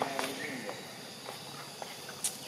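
Scattered light clicks and rustles, like footsteps on dry leaf litter over dirt ground, with a short falling voice-like call right at the start and a few faint high chirps.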